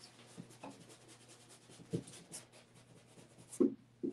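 An angled paintbrush scratching and rubbing across a stretched canvas in a run of fine, scratchy strokes, with a couple of louder short bumps about two seconds in and near the end.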